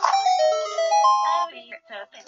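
A short electronic chime jingle: it starts with a sudden hit, then clear notes step upward for about a second and a half. A brief bit of a voice follows near the end.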